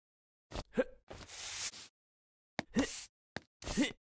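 A string of short comic sound effects: quick pops and brief rising non-word vocal noises, with a longer swishing noise about a second in.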